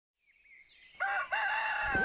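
A rooster crowing about a second in: two short notes, then a long held note, over faint birds chirping.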